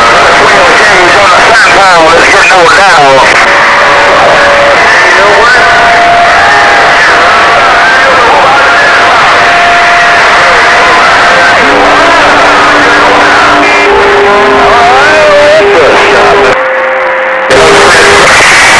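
CB/freeband radio receiver audio on an AM channel: static hiss with overlapping carriers making steady heterodyne whistles that shift pitch every few seconds, warbling tones early on, and garbled voices. The signal briefly drops about a second and a half before the end, then returns.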